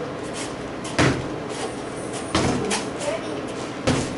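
A practice broadsword striking a freestanding training dummy: three sharp knocks, about a second and a half apart.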